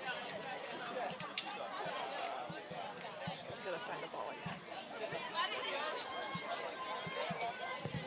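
Faint, overlapping shouts and chatter of players and spectators carrying across an outdoor sports field, with a few scattered short clicks.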